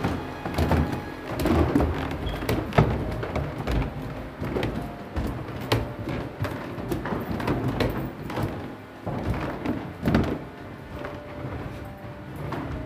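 Footsteps of a group in sandals and flip-flops climbing a carpeted wooden staircase and walking across the floor: irregular thuds and knocks, with music underneath.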